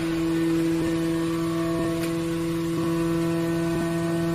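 Hydraulic metal baler's power unit, its electric motor and hydraulic pump, running with a steady hum.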